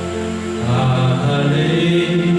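A man singing a slow, chant-like worship song into a microphone, holding long notes.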